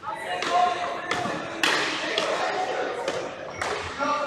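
Ball hockey play on a hardwood gym floor: several sharp knocks of sticks striking the ball and the floor, echoing in the large hall.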